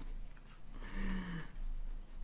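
A small deck of Lenormand cards handled and shuffled in the hands, light papery slides and taps, with a short hummed 'mm' from a woman's voice, falling slightly in pitch, about a second in.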